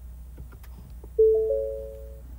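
A 2021 Ford Bronco's dashboard chime as the ignition is switched on with the engine off: three overlapping notes about a second in, fading out, over a low steady hum.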